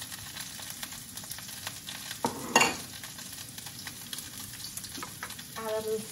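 Sliced onion sizzling in hot oil in a wok, a steady crackle, with one louder clatter about two and a half seconds in.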